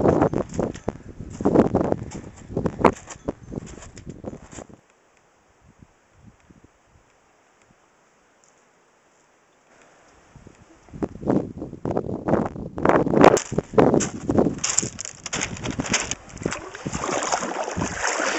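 Wind buffeting the camera microphone in uneven gusts. It drops to near silence for about five seconds in the middle, then comes back.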